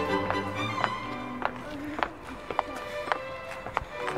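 Background music: a melody of separate, distinctly attacked notes over held tones, with the low sustained notes dropping away within the first second.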